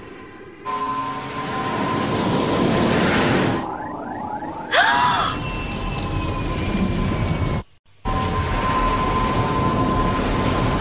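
Cartoon sound effects of a futuristic racing ship's engine rushing along at speed, a dense steady rush with a whoosh about five seconds in and a slowly falling tone after it. The sound cuts out briefly just before eight seconds, then comes back.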